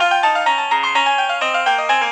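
Synthesized MIDI music from a Microsoft Office clip-art MIDI file, played back note by note in Synthesia: quick running lines in two parts in C sharp major, with the notes starting at an even pulse of about four or five a second.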